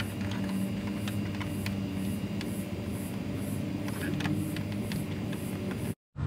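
Steady low background hum with scattered light clicks and rustles as a tow mirror's wiring harness is fed through the door and its plastic wrap is handled.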